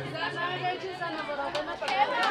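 Several people talking at once in the background, an indistinct chatter of overlapping voices, quieter than the microphone speech around it.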